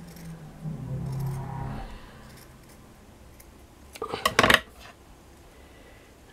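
Scissors cutting through a piece of felt, with a brief clatter about four seconds in.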